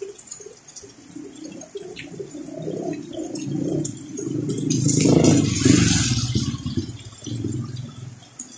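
A motor vehicle passing on a rain-wet street, its engine and tyre hiss growing louder to a peak about five seconds in, then fading, over the steady hiss of heavy rain.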